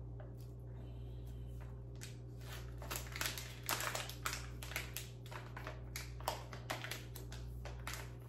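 A white packet crinkling and rustling as it is handled, in quick irregular crackles that begin a couple of seconds in and go on until near the end, over a steady low hum in the room.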